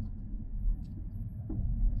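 Low, steady road and drivetrain rumble inside a moving car's cabin.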